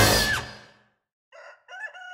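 The last chord of orchestral title music dies away, and after a short silence a rooster crows, starting about a second and a half in, as a dawn cue.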